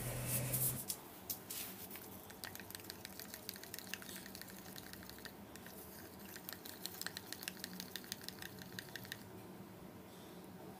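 A thin stirrer mixing thick acrylic paint in a small plastic cup: faint, quick, irregular clicks and light squishing as it scrapes against the cup, several to the second, starting about a second in.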